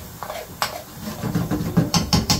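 Metal spoon stirring and scraping a thick curry sauce around a frying pan, knocking against the pan. A single knock comes about half a second in, and the stirring becomes a quick, busy run of scrapes and knocks in the second half.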